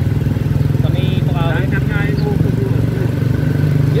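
Honda PCX scooter's engine running steadily at cruising speed, heard from the rider's seat, a constant low drone.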